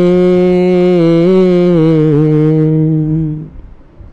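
A singer's voice holding one long note of a devotional song, steady with a slight waver, then fading out about three and a half seconds in.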